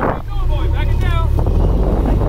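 Wind buffeting the microphone over the low rumble of a fishing boat's engine underway. The rumble grows heavier about halfway through.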